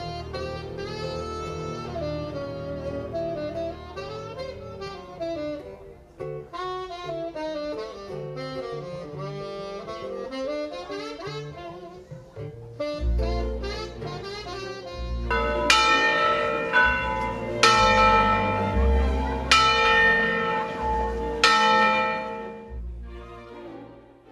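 Live jazz band: a saxophone plays a winding solo line over bass and guitar, then about halfway the band comes in with heavy bass notes and loud accented chords about every two seconds, dying away near the end.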